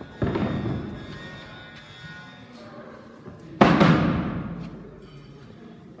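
Two heavy thuds about three and a half seconds apart, the second louder, each ringing out for about a second. They come from a heavy round lifting stone being set down on top of a wooden barrel during a strongman stone load.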